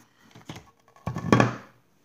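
Shopping items being handled on a tabletop: a few light taps, then a louder thunk about a second in as something is set down.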